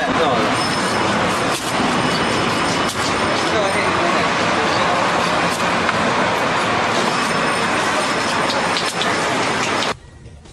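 Steady, loud background hubbub with indistinct voices and a few faint clicks, stopping abruptly at the end.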